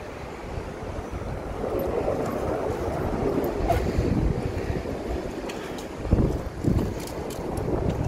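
Wind buffeting the camera microphone: an uneven low rumble, with stronger gusts about six seconds in.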